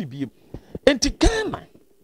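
A man clears his throat about a second in, a sharp rasp followed by a voiced sound falling in pitch, between short bits of his speech.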